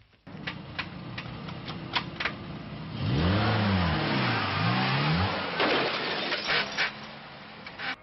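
Car engine running with a few sharp clicks, then revved loudly about three seconds in, its pitch rising and falling twice as the car pulls away, before it eases off.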